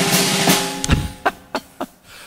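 Acoustic drum kit struck hard: drum hits under a cymbal crash, ringing out and fading within about a second and a half, followed by a few lighter strokes near the end.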